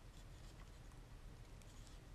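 Near silence with a few faint, short scratches and light taps: a resin model horse's hooves rubbing against the primed display base it is being fitted onto.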